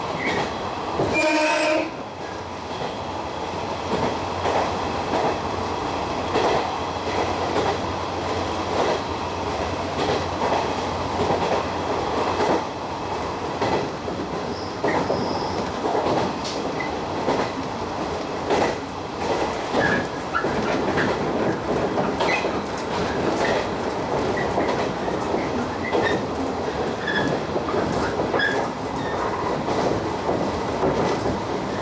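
A 115-series electric train running, heard from inside the driver's cab: a steady rumble of wheels on rail with irregular clicks from the rail joints. There is a short pitched tone about a second and a half in, and a low hum under the running noise for the first ten seconds or so.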